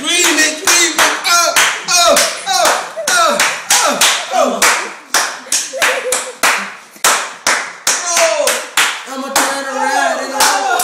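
Rhythmic hand clapping, about three claps a second, with several voices chanting along.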